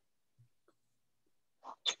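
Near silence on a gated call line, then a couple of short mouth noises from a reader near the end.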